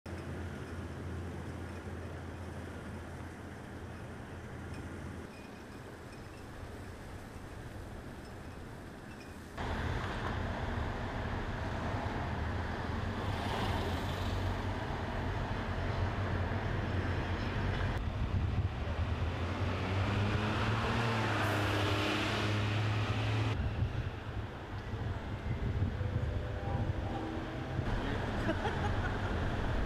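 Street traffic: a steady mix of vehicles running and passing, stepping up abruptly to a louder, closer level about ten seconds in, with a few louder passes later on.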